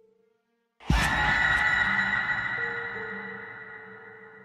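Horror jump-scare stinger. The soft ambient drone drops out, then about a second in comes a sudden loud hit with a deep boom and a bright crash. Its ringing tail fades slowly over a quiet ambient music bed.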